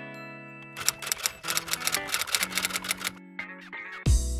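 Intro jingle of held musical notes with a rapid run of typewriter-style clicks, a typing sound effect, starting about a second in and lasting about two seconds.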